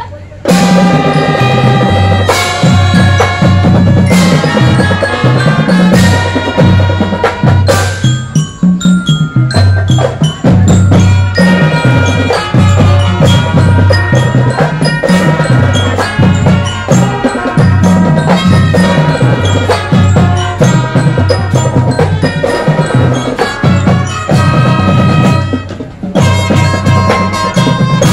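Marching band playing: brass over a pulsing bass line and drums, starting suddenly about half a second in and then running loud, with a brief dip near the end.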